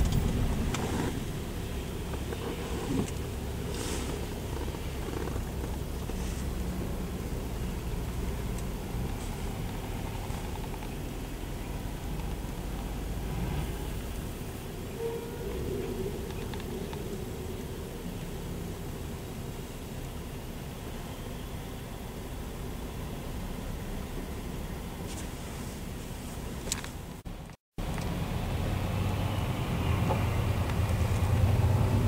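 Steady low rumble of a truck driving on the road, engine and road noise together, cut off briefly near the end.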